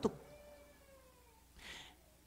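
A brief pause in a man's speech: a faint, drawn-out tone that glides downward, then a short breath in near the end.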